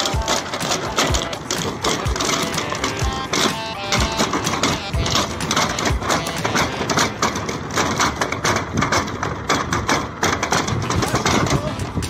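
Rapid, dense clatter of hollow plastic pipes knocking against each other as they are handled and loaded, mixed with background music.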